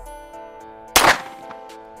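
A single shot from an Archon Type B 9mm pistol about a second in, sharp and loud, fired as the trigger breaks, over background music.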